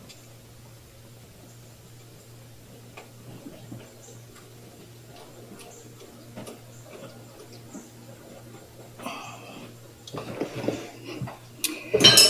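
Faint scattered clicks and light rattles of hands working a rubber hose and its clamp on an engine's carburetors, with a few louder rustles near the end.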